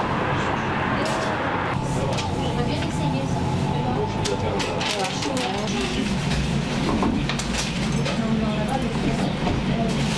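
Indistinct voices talking in a busy shop, with a few short clicks and knocks from handling at the counter.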